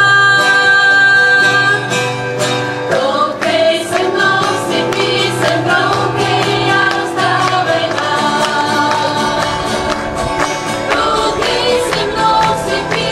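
Several acoustic guitars strumming steadily while a group of women's voices sing together, with long held notes.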